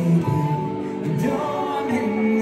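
Live band performing a song with singing over electric guitars and keyboard, with held sung notes.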